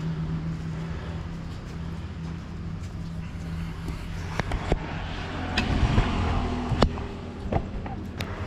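A steady low motor hum runs throughout. In the second half, a few sharp knocks and clicks sound as a wooden chair and table are handled while someone sits down.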